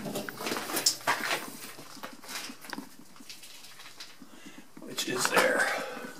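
Irregular clicks and scuffs of footsteps and camera handling in a confined steel compartment, with a brief voice-like sound near the end.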